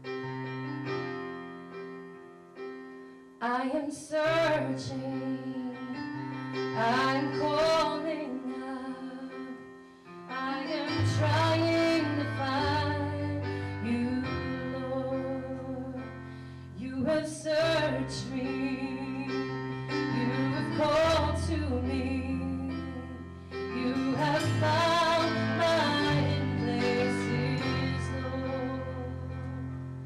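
A woman singing a slow song while playing an electric keyboard with a live band. The keyboard opens alone, her voice comes in about three and a half seconds in, and a deep bass line joins about eleven seconds in.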